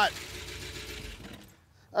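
1964 Cadillac V8 running with a fast, steady lifter clatter, dropping away about one and a half seconds in. The hydraulic lifters are bled down after the engine was run with zero oil and have not yet pumped back up.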